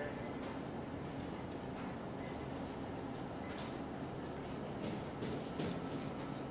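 Steady background hum with a few faint, brief scrapes of a knife slicing fat from a raw beef brisket on a plastic cutting board.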